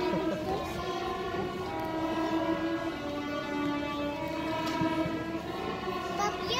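Student string orchestra of violins, violas, cellos and double basses playing long held chords that change every second or so.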